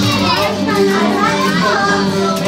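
Children's voices and chatter over loud background music with a steady low bass line.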